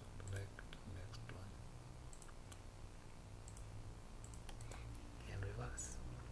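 Faint computer mouse clicks, irregular and scattered, over a low steady hum.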